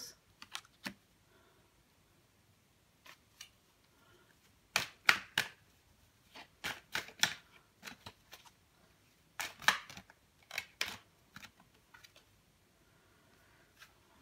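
Tarot cards being handled on a table: scattered crisp clicks and snaps of card stock, coming irregularly and often in quick clusters of two or three, as a card is laid down and the next ones are drawn from the deck.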